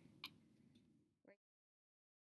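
Near silence: faint room tone with a single soft click shortly after the start and another brief faint sound about a second later, then the sound track cuts to dead silence.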